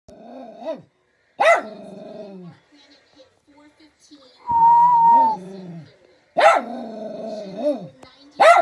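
Small shaggy black dog barking at close range: a short bark at the start, then loud barks about a second and a half in and again near the end, each drawn out into a longer falling note.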